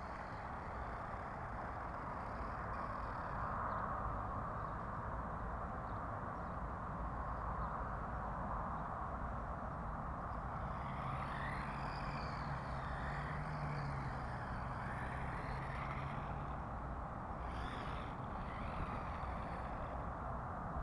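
Steady outdoor hiss, with the thin whine of a small electric RC car motor rising and falling for a few seconds about halfway through and again briefly near the end.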